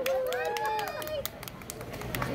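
A small group clapping hands, irregular sharp claps, with a few voices trailing off during the first second.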